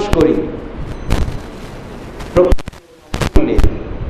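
A man's voice trails off. It is followed by a run of sharp pops and clicks in the recording, in small clusters, loudest a little past three seconds in.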